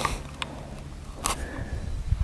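Quiet outdoor ambience with a low steady rumble of wind on the microphone, and two faint clicks of rifle handling as the rifle is shouldered and aimed, one about half a second in and one just past a second in. No shot is fired.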